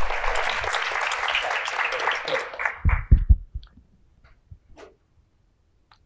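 Audience applause dying out after about three seconds, then a few heavy low thumps of a microphone being handled and some faint clicks before a mic check.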